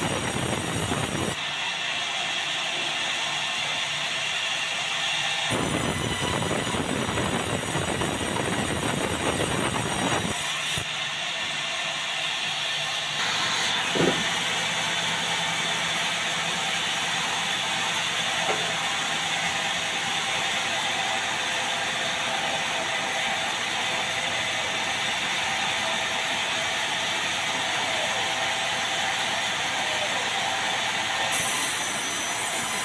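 Sawmill band saw and its machinery running steadily through timber, a loud continuous mechanical noise whose character changes abruptly several times, with a single sharp knock about 14 seconds in.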